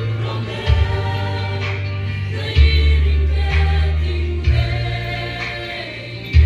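Choir singing gospel music over an amplified band, with deep bass notes changing every second or two.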